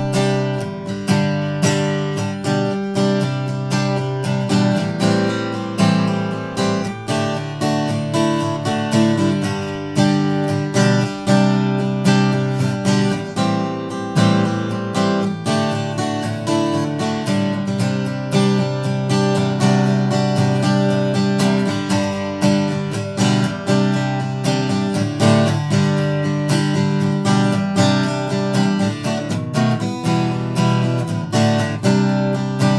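Maestro Victoria ME cutaway acoustic guitar, with an Adirondack spruce top and Makassar ebony back and sides, played steadily as a demonstration, with notes and chords struck several times a second.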